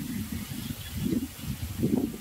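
A pause in speech, filled by a low, uneven outdoor background rumble.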